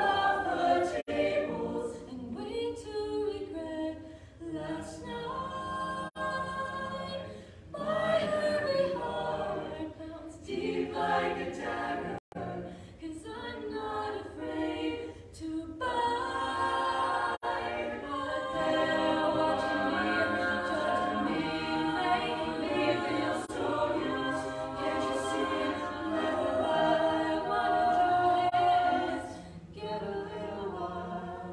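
Co-ed a cappella group of men and women singing a song in close harmony, a solo voice over the ensemble's backing, with short breaks in the phrasing. The texture fills out and grows louder about halfway through.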